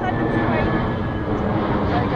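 Wind buffeting an action camera's microphone, a steady low rumble, with faint voices of people nearby.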